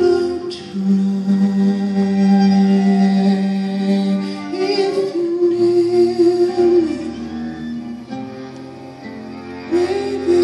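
A live acoustic ensemble of cello, violin, saxophone and acoustic guitar playing a slow instrumental passage of long held notes, each sustained for a few seconds before moving to the next pitch.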